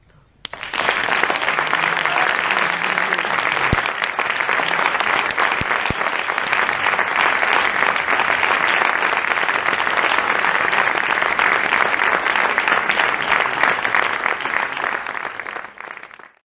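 Audience applause, starting suddenly about half a second in, holding dense and steady, then fading out near the end.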